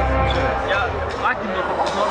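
Live hard rock band playing loud in a hall; the heavy bass and drums thin out into a sparser passage of sliding, bending pitched lines before the full band comes back in just after.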